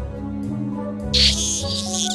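Dolphin chattering sound effect: a burst of high, rapid clicking squeaks about a second in, over background music with a steady low note.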